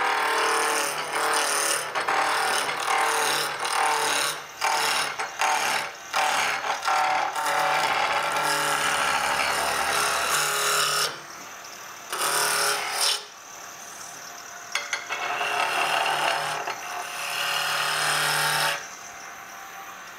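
Roughing gouge cutting a spinning wooden handle blank on a wood lathe, with the lathe motor's steady low hum underneath. The cutting noise is full of short sharp strokes in the first half and stops briefly a few times later on.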